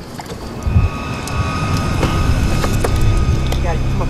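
Steady low rumble of a boat's motor, with a thump under a second in and scattered clicks of gear being handled, under a faint music bed.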